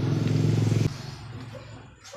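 An engine running steadily with a fast even pulse, which cuts off abruptly about a second in, leaving only faint small handling sounds.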